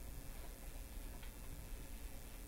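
Quiet room tone with a steady low hum and one faint click a little past a second in.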